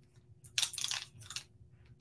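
Plastic paint pens rattling and clicking together as they are rummaged through and picked up. There is a short cluster of crinkly handling noise about half a second in and a smaller one near the end.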